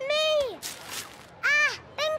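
A child's voice giving two short wordless exclamations, each rising and then falling in pitch, one at the start and one about a second and a half in. Between them comes a brief rustling rip of wrapping paper being torn open.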